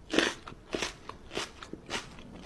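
A small dog held close to the microphone making short, evenly repeated sounds, about three every two seconds.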